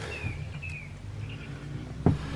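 Outdoor ambience: a few short, faint bird chirps in the first second and again around the middle, over a steady low rumble.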